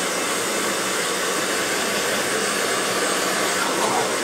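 Hand-held hair blow dryer running steadily, a constant rush of air.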